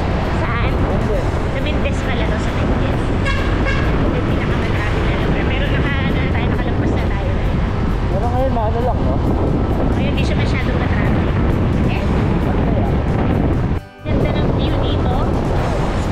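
Wind buffeting the microphone and road noise from a moving motorcycle in traffic, a steady loud rush, with a sudden brief break about two seconds before the end.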